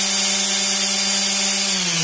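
Makita M9202B 5-inch random orbital sander running free in the air with a hook-and-loop sanding disc on its pad: a steady motor whine over a high hiss. Near the end it is switched off and the pitch starts to fall as it winds down.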